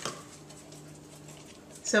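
Quiet kitchen room tone with a faint, steady low hum, then a woman's voice begins near the end.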